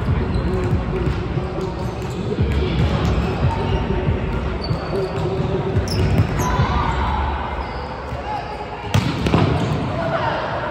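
Volleyball rally in a large hall: sharp slaps of hands and forearms on the ball, with a loud one near the end, each echoing. Players' voices and background chatter run underneath.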